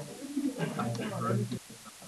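A person's voice talking indistinctly for about a second and a half, then a short pause near the end.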